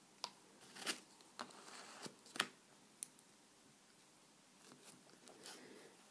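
Faint handling sounds of nail stamping tools on a metal stamping plate: a few short scrapes and clicks, the loudest about two and a half seconds in, then a few softer taps near the end.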